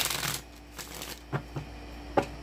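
A deck of tarot cards being shuffled by hand: a dense fluttering burst in the first half-second, a softer rustle around one second in, then two light taps.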